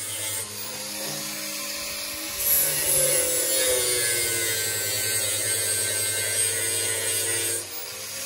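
Angle grinder cutting or grinding the car's sheet-steel body panel, its whine dipping and recovering under load; it gets louder about two and a half seconds in and stops shortly before the end.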